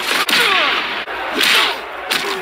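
Fight sound effects from an animated cartoon: two sharp swishing whooshes of blows, the louder one about one and a half seconds in.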